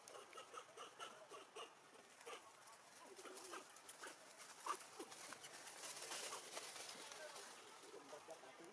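Quiet outdoor ambience with scattered soft, short chirps and squeaks from small animals and light clicks. One sharper click comes about halfway, and a faint high hiss swells in the second half.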